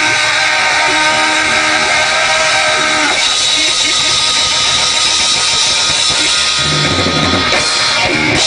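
Live rock band playing loudly and continuously: electric guitar, bass guitar and drum kit.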